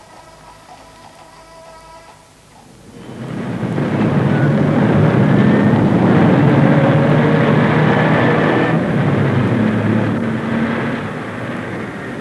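City street traffic noise: the steady, dense sound of buses and cars running. It comes in loudly about three seconds in, after a few quieter seconds with faint steady tones.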